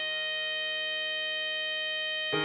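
Computer-rendered tenor saxophone holding one long, steady melody note (F) over a sustained E-flat major accompaniment chord.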